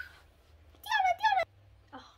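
A young girl's brief, high-pitched wordless exclamation, its pitch wavering, lasting about half a second, about a second in.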